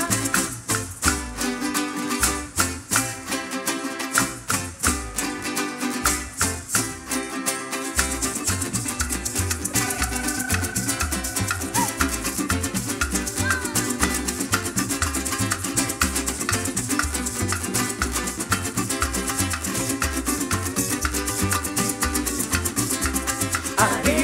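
Parang band playing an instrumental passage: cuatros and guitar strumming over shaken maracas and a hand drum. A steady low beat comes in about eight seconds in.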